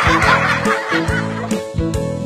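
A baby's loud, raspy squeal lasting about a second, over background music with a steady beat.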